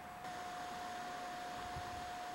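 Faint steady hiss with a constant high-pitched hum, the camcorder's own recording noise. The level steps up slightly a quarter second in.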